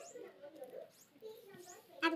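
Faint voices talking in the background, with a few brief, high squeaky chirps.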